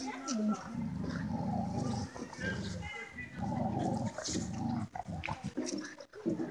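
Dogs play-growling in long low rumbles with short breaks between them.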